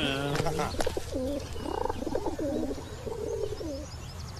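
Pigeon cooing: a series of low, repeated coos about a second in, following a brief voice at the start.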